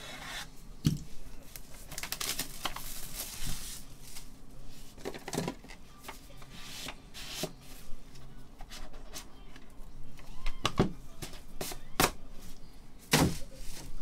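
Plastic shrink wrap being slit and peeled off a cardboard trading-card box, with crinkling, scraping and handling noise. Several sharp knocks and clicks come through it, the loudest about a second in and near the end.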